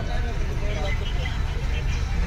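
Steady low drone of a tour bus's engine and running gear, heard inside the passenger cabin, with people talking faintly over it.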